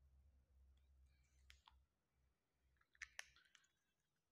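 Near silence with a few faint clicks from a whiteboard marker being handled in the hands: one click about a second and a half in, then two sharper clicks in quick succession about three seconds in.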